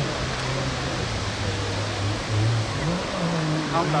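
Rally car engine running as the car drives across a grass field, its note falling then rising again about three seconds in.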